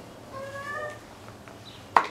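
A dry-erase marker squeaking against a whiteboard as it writes: one short, slightly rising squeak of about half a second.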